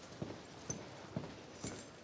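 Faint footsteps of a person walking at an even pace on a tiled floor, about two steps a second.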